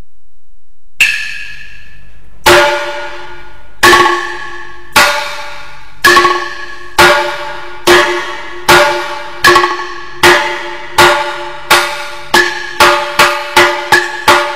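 Wenzhou guci percussion: single sharp, briefly ringing strikes that begin about a second in and speed up steadily, from about one every second and a half to about three a second by the end.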